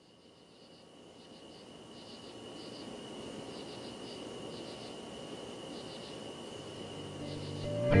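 Insects chirping in short repeated trills over a steady hiss, fading in gradually; near the end, the low notes of a guitar-backed music track come in.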